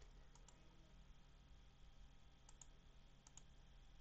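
Near silence with a low steady hum, broken by three pairs of faint computer clicks: one about half a second in, one past the middle and one near the end.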